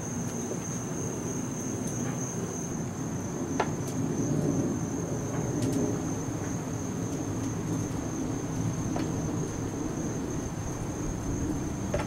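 Insects droning steadily on one high note over a low outdoor rumble, with a few faint clicks as metal tongs set beef short ribs on the smoker's steel grate.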